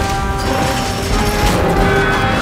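Sound effects of a giant robot suit moving, with mechanical whirring and clanking and a heavy crashing impact about one and a half seconds in. Underneath is a sample-based orchestral score holding sustained notes.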